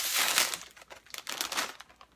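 Plastic potato chip bag crinkling loudly as it is pulled open at the top, then softer, scattered crackles as the open bag is handled.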